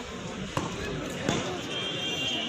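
Two sharp cracks of a field hockey stick hitting the ball, about three quarters of a second apart, over voices of players and onlookers.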